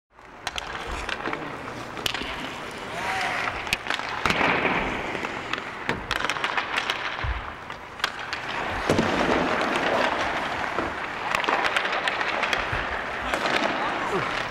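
Ice hockey practice on the rink: skate blades scraping the ice under a steady noise of play, with frequent sharp cracks of sticks striking pucks and pucks hitting the boards and the net. Voices call out now and then.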